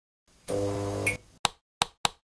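Intro logo animation sound effect: a short held electronic tone for about half a second, followed by two sharp clicks.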